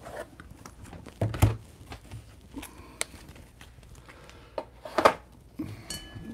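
Sleeved trading cards in rigid plastic toploaders being handled and sorted: a few scattered rustles and short clicks, with a sharp click about halfway through.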